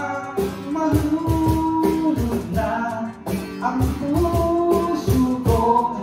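Karaoke-style singing over a backing track with a steady drum beat and guitar, the voice holding long notes.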